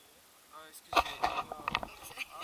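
People talking in low voices close to the microphone, with a sharp clack about a second in as the harness and camera are handled.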